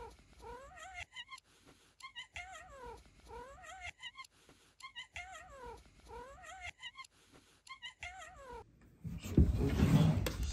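A white cat giving a run of short warbling trilled meows, its 'burunya' song, repeating about once a second; this call is taken as the barometer of its health. In the last second the calls stop and a loud rustling clatter of handling takes over.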